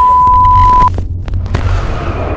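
A loud electronic beep: one steady pure tone held for just under a second, then cut off abruptly, followed by a low rumble with scattered clicks.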